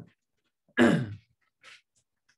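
A man clearing his throat once, about a second in, the pitch dropping as it ends.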